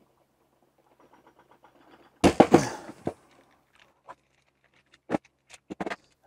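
Ratchet wrench clicking faintly for about a second. Then a loud, sharp crack about two seconds in as a tightly seized drill chuck breaks loose from a Bosch GSR 12V-30 drill's spindle. A few light knocks of the freed chuck follow.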